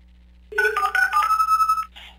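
Short electronic ringtone-style jingle: a quick run of clear beeping notes stepping up and down in pitch, starting about half a second in and lasting about a second and a half. It works as a phone-style cue for a played-back listener voicemail.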